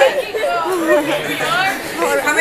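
Indistinct chatter: several people talking at once, their voices overlapping so that no words stand out.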